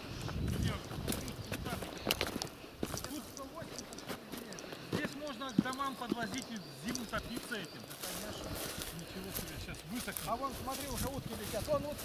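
Faint, indistinct voices of people talking at a distance, with scattered clicks and rustles throughout.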